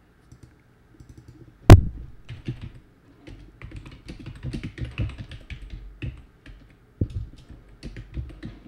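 Typing on a computer keyboard: a run of uneven keystrokes. A single sharp, loud knock comes about a second and a half in and is the loudest sound.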